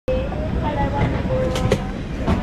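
Steady low rumble of an airliner cabin at the boarding door, with faint indistinct voices and a couple of sharp clicks near the end.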